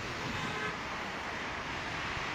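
Steady outdoor background noise, with no single sound standing out.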